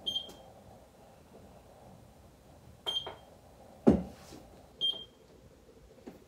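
Microcurrent facial machine giving three short high-pitched beeps about two seconds apart while its probes are held on the skin, with a single dull thump near the middle.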